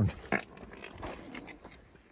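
Worn tire on a junked vehicle, pressed by hand, making a funny sound: a short sharp noise about a third of a second in, then a rough, rubbery noise for about a second that fades out.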